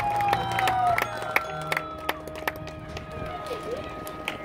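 Marching band's winds holding a soft sustained chord that slowly fades, with scattered claps and a brief whoop from the crowd.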